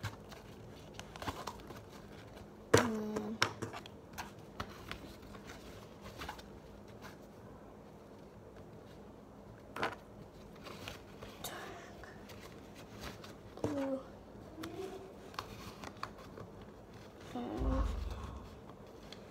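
Pens and small stationery items being handled and put into a fabric pencil case: scattered clicks and light knocks of plastic, the sharpest about three seconds in, with a few brief murmurs and a rustle of handling near the end.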